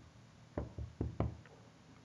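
A handful of light knocks in quick succession, about five spread over a second, starting about half a second in.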